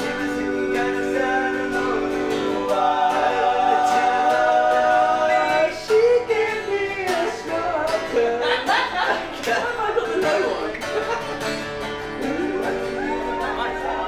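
Acoustic guitars strummed while male voices sing long held notes over a regular tapped beat, as an informal acoustic band rehearsal.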